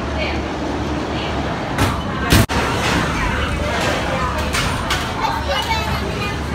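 Background chatter of people's voices over a steady low hum, with one sudden loud knock a little over two seconds in, cut off by a brief gap.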